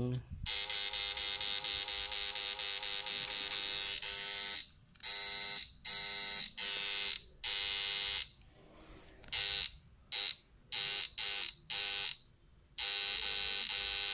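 Homemade push-pull inverter of an electric fish shocker, with pulse-chopped output, giving a steady high-pitched electronic whine. It cuts out and comes back several times, with a run of short bursts in the second half before running steadily again near the end.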